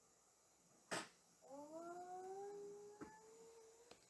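A short click about a second in, then a faint, drawn-out vocal call that slowly rises in pitch for about a second and a half.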